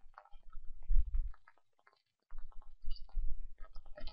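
Faint computer keyboard clicks, with two stretches of low rumbling noise, the louder one about a second in.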